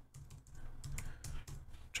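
Typing on a computer keyboard: a quick, faint run of key clicks.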